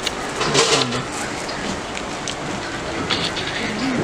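Polished gemstone cabochons clicking and clattering against one another as a hand sifts through a tray of them, in two flurries, about half a second in and again just after three seconds, over a steady background hiss.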